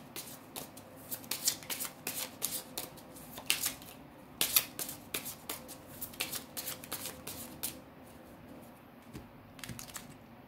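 Tarot cards being shuffled by hand: a quick run of papery clicks and flicks for about eight seconds, thinning to a few faint taps near the end.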